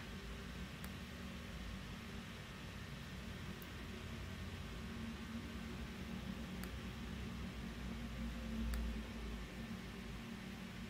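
Quiet room tone: a steady hiss and low hum from the recording setup, with four faint computer-mouse clicks spread through it.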